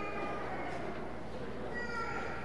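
Indistinct murmur of people talking in a large, reverberant room, with a short high-pitched squeal or cry at the start and another near the end.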